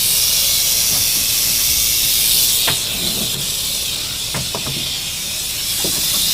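A snake making a continuous, even, high hiss. A few light knocks come partway through and near the end.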